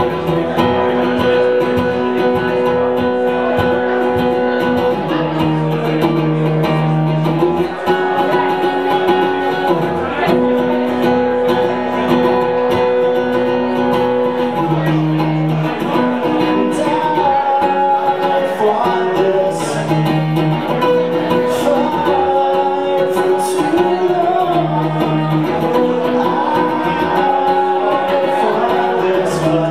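An acoustic guitar played live with a man singing over it: a folk song with sustained chords and a wavering vocal line.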